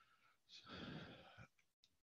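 A speaker's faint breath, drawn in once about half a second in and lasting under a second, in otherwise near silence.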